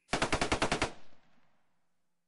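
A burst of rapid gunfire: about nine shots in under a second, then a fading echo.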